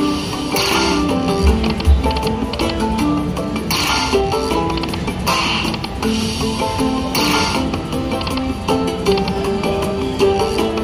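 Aristocrat slot machine's hold-and-spin bonus music, a looping tune of short repeated notes. Short swishing spin sounds come every couple of seconds as the open reel spots respin and stop, with a low thud about a second and a half in.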